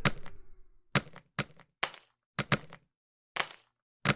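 Edited-in sound effects of blast impacts: about seven sharp cracks in quick, uneven succession, each with a short tail and dead silence between, two of them close together in the middle.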